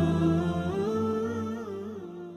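Wordless vocal humming in Islamic background music, a slow melody of held notes that step up and down. A low steady tone beneath drops out before a second in, and the humming fades out toward the end.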